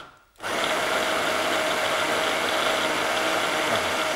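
Electric hand-blender motor on a chopper bowl running steadily, blending a lentil kofta mixture, with a brief cut-out right at the start before it runs on with an even hum.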